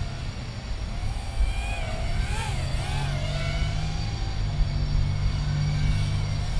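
Motors and props of a 65 mm toothpick FPV quadcopter whining in flight, the pitch wavering up and down with throttle, most busily around the middle. A low steady hum runs beneath.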